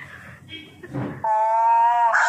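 A woman's voice: a few short sounds, then from a little past the middle a long held vowel, steady and rising slightly in pitch, that runs on into speech.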